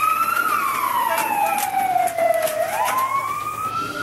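Fire truck siren wailing: the tone rises, falls slowly for about two seconds, then climbs again near the end.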